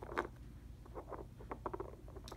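Plastic toy horse tapped along a wooden floor: light clicks of its hooves on the boards, one sharper click just after the start and then a quick run of taps.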